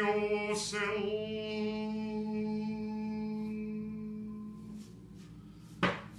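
A man's voice intoning a long sustained note in ritual chant, held at one steady pitch and slowly fading away after about five seconds. A short sharp sound comes near the end.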